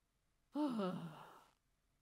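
A single breathy sigh from a person's voice, starting about half a second in and lasting about a second, its pitch falling and wavering as it fades.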